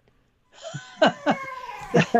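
A person laughing, starting about half a second in after a brief gap, with a drawn-out, slowly falling note near the end.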